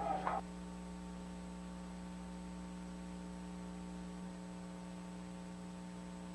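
Steady electrical mains hum, a low tone with several even overtones over faint hiss. A faint tail of earlier sound dies out within the first half second.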